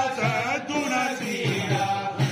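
Tamil devotional song sung in a chant-like melody, the voice gliding between held notes over a low beat about twice a second.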